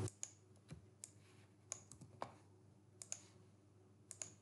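Faint, irregular clicks of a computer keyboard and mouse, about nine of them spread across a few seconds.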